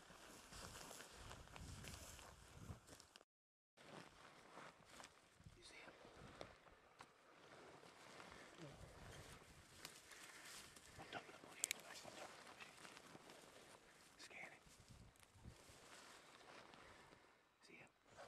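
Near silence: faint rustling and scattered small clicks, with a brief total dropout about three seconds in.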